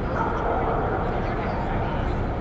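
Steady crowd chatter with a dog barking among it.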